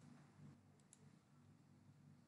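Near silence: faint room tone with three soft, brief clicks, one near the start and two close together about a second in.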